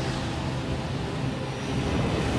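A deep, steady rumble of film-trailer sound design, dense and low with a noisy haze above it, swelling slightly near the end.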